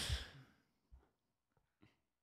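A man's breathy exhale, like a sigh, fading out in the first half second, then near silence with a couple of faint ticks.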